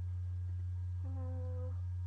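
A loud, steady low hum runs throughout. About halfway through, a person's voice holds a single steady note for under a second, like a short hum.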